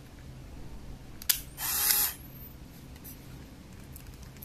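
Aikon F-80 compact film camera's mechanism: a sharp click a little over a second in, then a brief whir of its film motor lasting about half a second.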